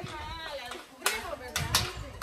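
Faint voices at a distance, with a few sharp clicks about a second in.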